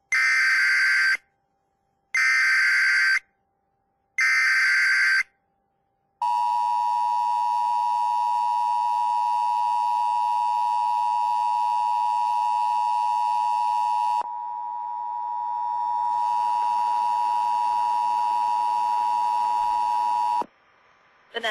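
Emergency Alert System tornado warning activation: three one-second bursts of SAME digital header data, about a second apart, then the EAS two-tone attention signal (853 and 960 Hz together) held as one steady harsh tone for about fourteen seconds.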